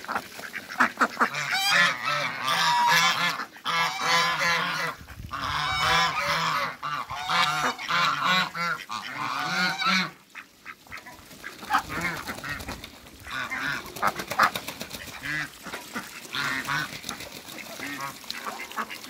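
A flock of domestic geese and ducks calling, with many overlapping goose honks. The calling is busiest for about the first ten seconds, then thins to scattered calls.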